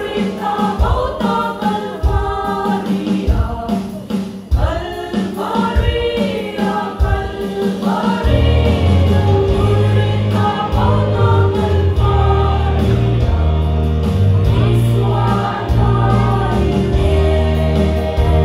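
A women's vocal group singing a Mizo gospel song together, with instrumental accompaniment carrying a bass line underneath. The accompaniment grows fuller and louder from about eight seconds in.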